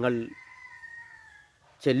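A distant rooster crowing: one faint, drawn-out note about a second long that falls slightly at the end, heard in a pause between spoken phrases.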